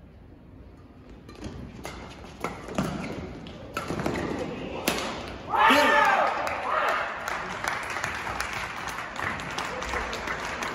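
Badminton doubles rally: a series of sharp racket strikes on the shuttlecock, about six in four seconds. About five and a half seconds in it ends with a loud shout from a player as the point is won, then clapping and cheering from a small arena crowd.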